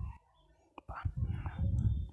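A single faint click, then a quiet, breathy voice sound close to the microphone for about the last second.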